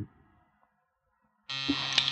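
An apartment lobby door-release buzzer sounds with a steady, harsh electric buzz, starting suddenly about a second and a half in. It is the answering buzz from upstairs that unlocks the door.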